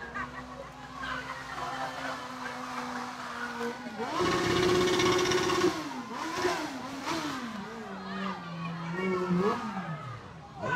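A motorcycle engine held at high revs during a burnout, its rear tyre spinning on the road and throwing smoke. It holds one steady note for about four seconds, jumps to a higher, louder pitch for a second or two, then is blipped up and down repeatedly.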